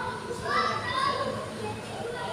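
Children shouting and calling out to each other while playing futsal, in high-pitched voices. The loudest call comes about half a second in, with fainter voices after it.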